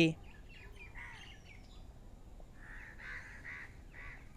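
Faint bird calls in the background: a couple of short calls about a second in, then a run of several short calls in the second half.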